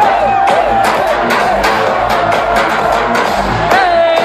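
Electronic dance music from a live DJ set, played loud over a festival sound system and heard from within the crowd. A steady kick-drum beat of about two a second runs under a long held high note.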